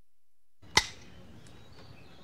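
Dead silence, then the soundtrack cuts in about two-thirds of a second in with a single sharp click, followed by faint steady background noise with a few weak ticks.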